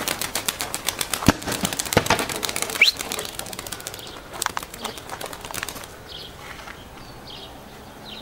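A small flock of Turkish tumbler pigeons flushed off their perch, wings clapping and beating rapidly as they take off. The wingbeats thin out and fade after a few seconds as the birds fly off, with a few faint bird chirps near the end.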